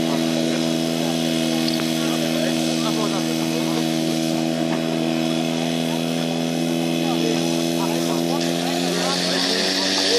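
Engine of an old portable fire pump (Tragkraftspritze) running steadily at high speed, its pitch rising in the last second as it pumps water out to the hoses. Voices are heard over it.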